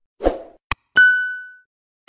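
Logo-animation sound effects: a soft pop, a sharp click, then a bright ringing ding that fades over about half a second.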